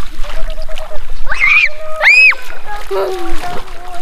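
Water splashing as children play in shallow sea water, with children's voices and a high-pitched squeal about two seconds in.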